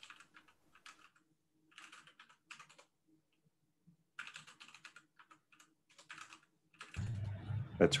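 Computer keyboard being typed on in several short bursts of quick key clicks, with a man's voice starting near the end.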